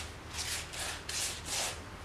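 Silicone pastry brush stroking egg wash onto risen bread dough: a run of quick swishing strokes, about two or three a second.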